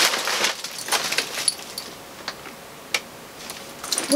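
A Louis Vuitton Neverfull MM coated-canvas tote being handled and opened: rustling, loudest in the first second and a half, then a few light clicks.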